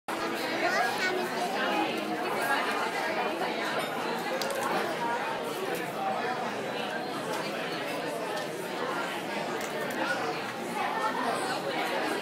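Steady background chatter of many diners talking at once in a busy restaurant.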